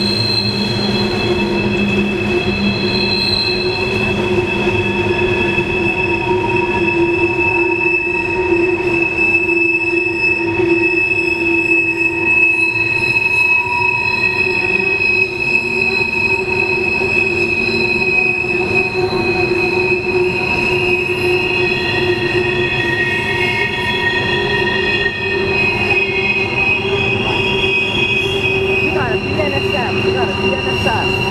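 Wheel flanges of a long freight train of hopper cars squealing as it rounds a tight curve: several steady high-pitched squeals that come and go and overlap, over the rumble of the rolling cars.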